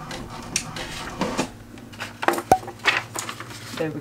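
A run of separate small clicks, taps and knocks of objects and paper handled on a desk.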